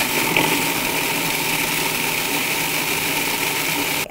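Countertop food processor running steadily, grinding panko, cornflake crumbs, sun-dried tomatoes and lemon peel into a crumb topping: an even motor whine under a dense whirring rush. It cuts off suddenly at the end.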